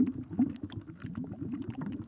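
Sound-effect ambience of continuous low bubbling and gurgling, dense and wavering, with faint scattered crackling clicks.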